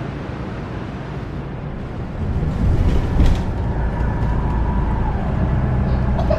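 Interior of a moving city bus: a low engine and road rumble, with a faint steady whine that drops in pitch about five seconds in and a single click. This comes in about two seconds in, after quieter street noise.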